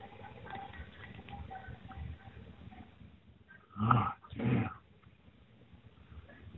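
Faint bagpipe notes, a thin wavering melody, then two loud short cries close together about four seconds in.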